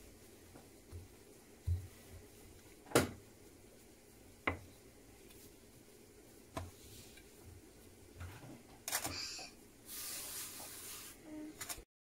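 Potato dough being rolled and handled on a floured board: a few soft thumps and two sharp knocks from the wooden rolling pin and hands, then a rustling brush in the last few seconds as the dough sheet is lifted and slid over the surface.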